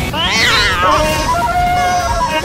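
A high, wavering meow-like cry that rises and then falls, about a second long, over background music with steady held notes.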